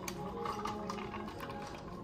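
Milk poured from a plastic bottle over ice into a plastic cup, with a run of small clicks and crackles from the ice cubes as the liquid hits them.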